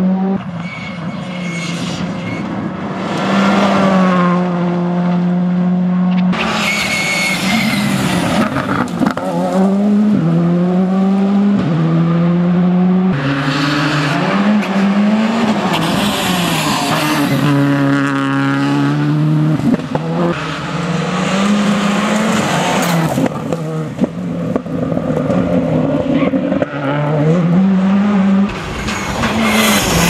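A Škoda Fabia R5 rally car's turbocharged 1.6-litre four-cylinder engine is revved hard through the gears at full stage pace. The pitch climbs in each gear and drops at every upshift, over several passes of the car.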